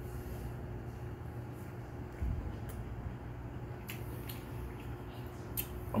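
A man chewing a mouthful of porgy nigiri close to the microphone, with a few soft clicks, over a steady low hum.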